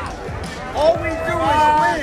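A loud voice calls out in one long drawn-out shout starting about a second in, over a low thumping beat and room noise.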